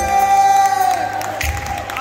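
A man's drawn-out shout held on one long note over a live band, dropping away about a second in, with the crowd cheering and the drums carrying on beneath.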